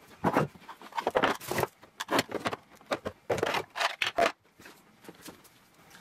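Clear plastic drawer-organiser trays being set down and slid into place in a drawer: a run of short knocks, clacks and scrapes that quietens in the last second or so.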